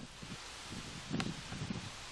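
Steady hiss of outdoor ambience, wind-like, from the river clip's own soundtrack as it plays back, with a single sharp click about a second in.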